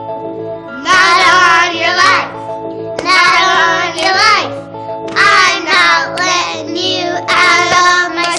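Two young boys singing a short refrain in four phrases over backing music with steady held notes.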